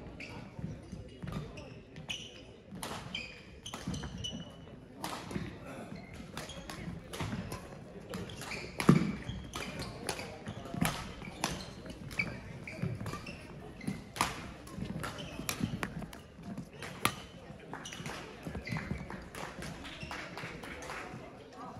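Badminton singles rally in a sports hall: sharp racket-on-shuttlecock strikes and court shoes squeaking and slapping on the sports floor, over a murmur of voices in the hall. A heavy thump about nine seconds in is the loudest sound.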